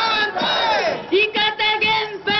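Shouted protest chant over a loudspeaker, voices calling out an anti-nuclear slogan together. A long falling call comes first, then short, clipped syllables.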